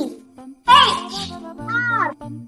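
Background music with steady held low notes, overlaid by two short, high-pitched vocal cries whose pitch bends, the louder one a little under a second in.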